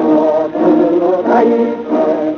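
Choir singing in held, wavering notes, on an old, thin-sounding radio recording.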